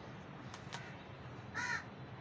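Hands crumbling and squeezing clumps of gritty dry sand and soil in a plastic tub, a soft steady grainy rustle. A bird calls twice over it, faintly a little before the middle and loudly about one and a half seconds in.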